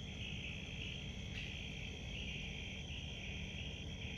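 Night chorus of crickets: a high, steady chirring that pulses in repeated bursts of roughly half a second each.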